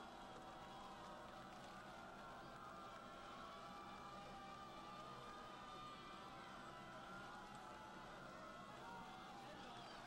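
Near silence: a faint, steady background hiss from the open field.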